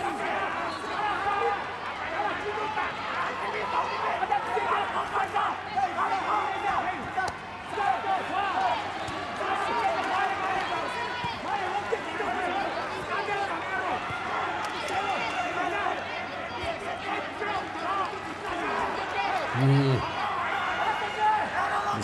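Several voices shouting over one another at ringside during a kickboxing exchange, with scattered thuds of punches and kicks landing.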